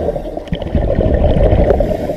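Scuba divers' exhaled air bubbling from their regulators, a steady low gurgling heard through an underwater camera's microphone.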